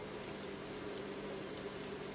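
Faint, irregular small metallic clicks of a BNC connector's metal collar being slipped over and screwed down onto the connector body by hand, over a low steady hum.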